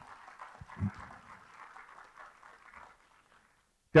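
Audience applauding lightly, with a soft low thump about a second in; the applause dies away shortly before the end.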